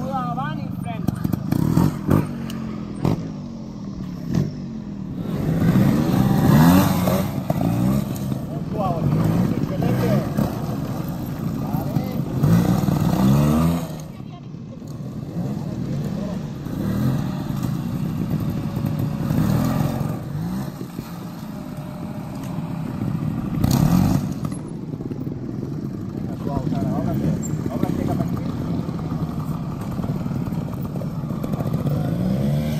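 Trials motorcycle engines running and being blipped, the revs rising and falling several times.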